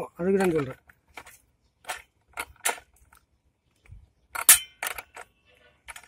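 Scattered metal clicks and clinks of a spanner being fitted and turned on the nut that holds a three-tooth steel blade on a brush cutter's gearhead, the sharpest about four and a half seconds in.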